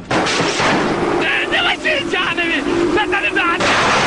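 Heavy gunfire at sea with men shouting over it; the noise changes abruptly near the end to a rushing hiss.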